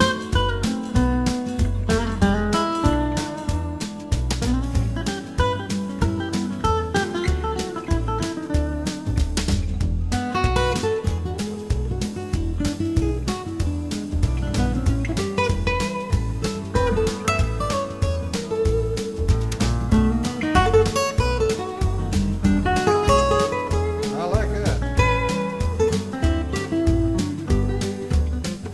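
Instrumental guitar break: fingerpicked guitar lead lines in a swing-jazz style over a steady bass pulse.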